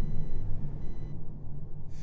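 A low, dark rumbling drone with faint thin high tones over it, the soundtrack bed under a narrated video.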